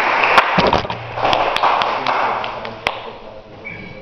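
Audience applause dying away, with a few sharp taps and knocks over it, fading out after about three seconds. A short high ringing note sounds just before the end.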